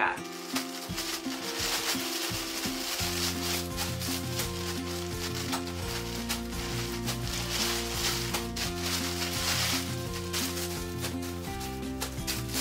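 Plastic packaging crinkling and rustling as clothing in plastic bags is pulled out of a parcel, over background music whose bass line comes in about three seconds in.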